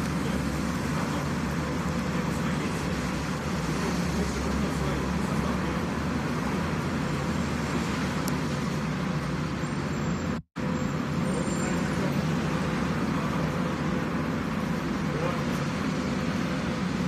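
Steady street traffic noise and low rumble picked up by a phone's microphone, with the sound cutting out for a moment about ten and a half seconds in.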